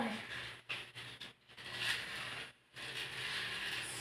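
Faint scraping rattle of a small plastic toy car running along a plastic toy track.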